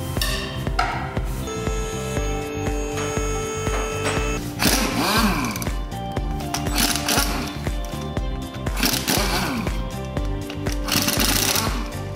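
Pneumatic impact wrench hammering on the wheel bolts in several short bursts, about four of them in the second half, over background music with a steady beat.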